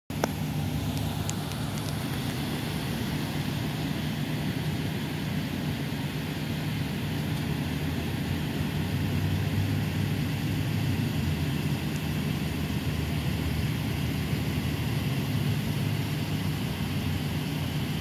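Pickup truck engine idling, a steady low hum.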